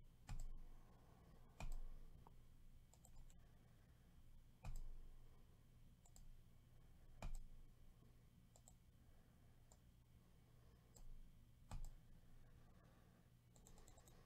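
Quiet, scattered clicks of a computer mouse and keyboard, about five sharper ones several seconds apart with fainter ticks between, over a low steady room hum.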